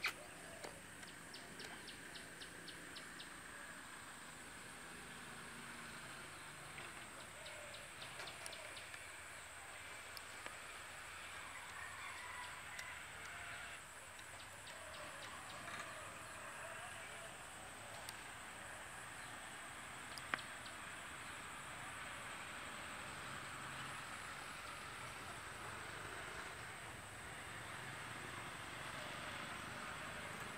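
Faint rural outdoor ambience: birds calling and chirping, with short rapid high chirp trills and chicken-like clucks in the background. A sharp click stands out about two-thirds of the way through.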